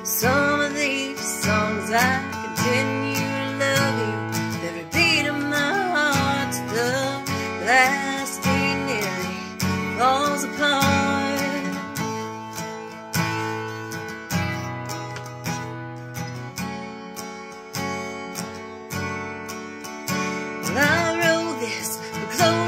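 Acoustic guitar strummed in a steady, even chord pattern through an instrumental break in a country song.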